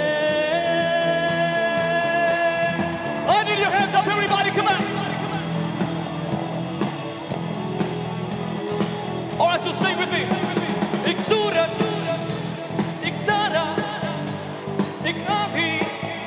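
Live rock band with a male lead singer: he holds one long note for about three seconds, then sings wavering phrases over drums and guitar.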